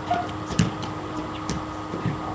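A small basketball knocking as it hits, the loudest knock about half a second in and another about a second later, over a steady electrical hum.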